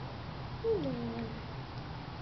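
A newborn baby gives one short whimper, falling in pitch, about two-thirds of a second in.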